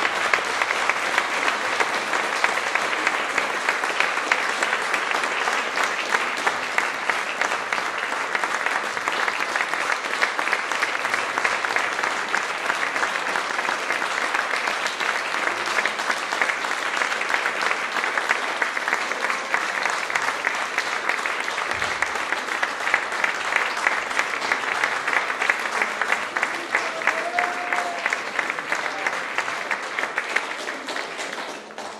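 Large audience applauding, a dense and even patter of many hands clapping.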